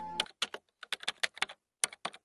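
Computer-keyboard typing sound effect: irregular rapid key clicks in short runs. Soft background music cuts off just after the start.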